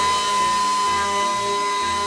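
Small handheld vibrating detail sander running steadily against a painted fuel tank, a high whine over hiss, sanding the old paint off its edges and corners.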